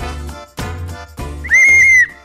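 Upbeat background music, then about one and a half seconds in a single short, loud, steady high-pitched blast on a contestant's toy whistle, blown to claim the right to answer.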